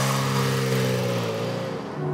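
Renault Alpine sports car's V6 engine pulling away and driving off, loudest at first and fading slightly as the car moves away.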